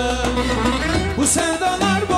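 Live Turkish folk-pop band playing an instrumental passage: a plucked-string melody with violins over steady bass, with a brief high accent a little past the middle.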